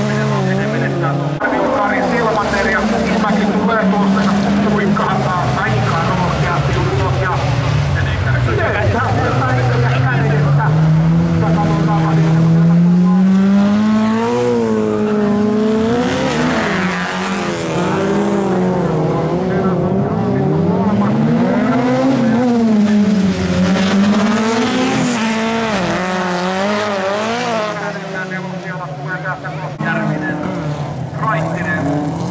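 Several folk-race cars racing together, their engines revving hard and rising and falling in pitch as they accelerate, shift and lift through the bends. The sound fades slightly near the end.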